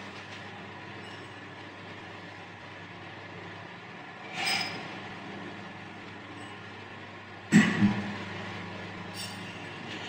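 Steady hum and rush of several electric fans running to cool the room. A brief soft noise comes about four and a half seconds in, and a sudden loud double burst of sound about seven and a half seconds in.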